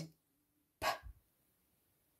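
A voice says the letter sound /p/ once, about a second in: a short, breathy puff of air with a thump of breath on the microphone.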